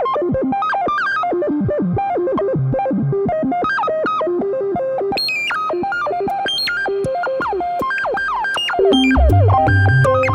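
Generative modular synthesizer patch playing on its own: a busy run of short pitched notes that step and glide up and down, with higher notes joining about halfway and a deep bass coming in near the end.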